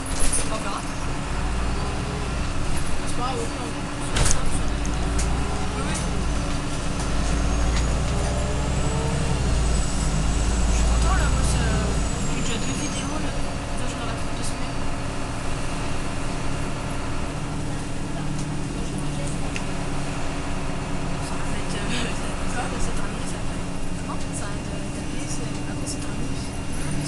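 Interior of an Irisbus Citelis Line city bus on the move: a steady diesel engine drone and road rumble, heavier through the first twelve seconds and then easing. There are two sharp knocks of the bodywork near the start.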